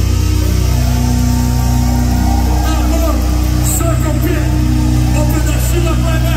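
Live heavy metal band letting a distorted guitar and bass chord ring out as a steady low drone, with no drumming. Shouted voices come in over it from a few seconds in.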